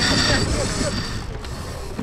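Crew voices on a racing sailboat over wind and water noise, with a brief mechanical rattle in the first second.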